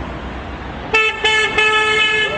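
A horn honking: two short toots in quick succession, then a longer held one, over steady street noise.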